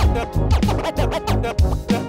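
Hip hop track's instrumental: a steady bass-heavy beat with DJ turntable scratching over it, short records-pulled-back-and-forth sweeps in pitch.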